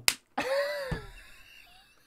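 A single sharp hand clap, then a man's long laughing cry that falls in pitch and trails off.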